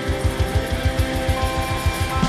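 Live punk rock band playing loudly, with electric guitars over drums. A fast, even low pulse drives under sustained guitar notes.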